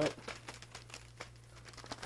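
Mailing packaging being handled, crinkling in scattered light crackles.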